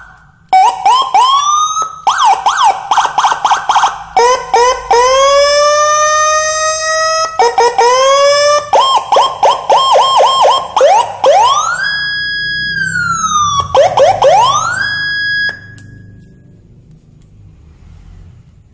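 Whelen 295SLSA1 electronic siren amplifier switched through its tones from a custom switch box: quick rising chirps, a slow rising wail, a rapid pulsing tone, then a long rise that holds and falls. The siren cuts off abruptly a little over three-quarters of the way through, leaving only faint background noise.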